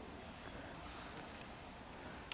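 Faint outdoor background hiss, with a soft rustle swelling and fading in the middle.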